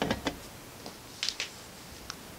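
Quiet room tone with faint handling noise: a short rustle at the start and a couple of soft clicks a little over a second in.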